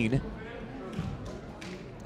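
A basketball bounced a few times on a hardwood gym floor: the shooter's dribbles before a free throw.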